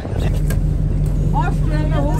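A boat's engine running, a steady low hum that comes in just after the start as the boat lies alongside the pier.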